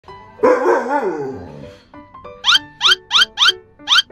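Alaskan malamutes vocalizing in excitement as their owner comes home: a wavering, falling howl-like whine lasting about a second, then, after a short gap, five short rising yips in quick succession.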